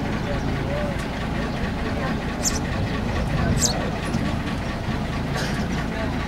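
Motorboat engine idling at the landing with a low, steady rumble, over the chatter of people waiting nearby.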